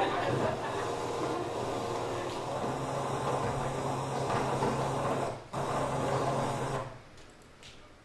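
Soundtrack of a motorboat-ride video heard through room speakers: the boat's engine running steadily under wind and water noise, with a short break about five and a half seconds in, cutting off about seven seconds in.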